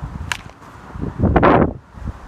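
A brief whoosh, loudest just past the middle and lasting about half a second, over low rumbling noise on the microphone.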